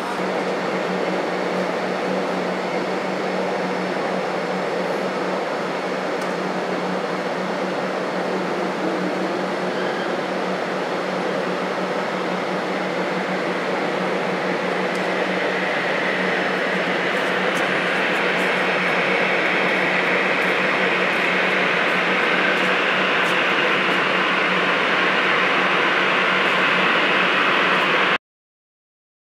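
Jet engines of a taxiing airliner: a steady rushing hum over a low drone, growing louder in the second half as a higher whine comes in.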